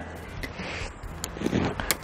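Aluminium travel tripod being handled as its legs are set, with soft rustling and one sharp click near the end.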